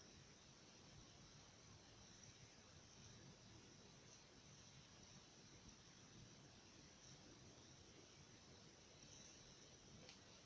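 Near silence: faint room tone with a steady hiss.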